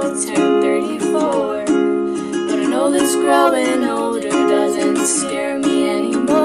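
Ukulele strummed steadily through a chord progression, with a woman's singing voice rising over it at moments.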